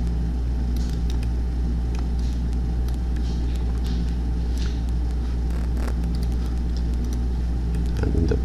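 Steady low electrical hum and background hiss, with faint scattered clicks.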